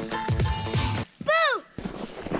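Background electronic music with a steady drum beat cuts off suddenly about a second in. It is followed by one short pitched sound that rises and then falls.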